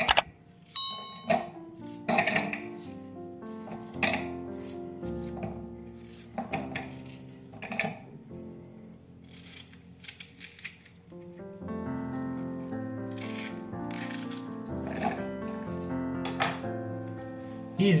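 Background music with held notes, over short sharp sounds every second or two as a kitchen knife slices a raw potato and an onion held in the hand and the pieces drop into a glass blender bowl.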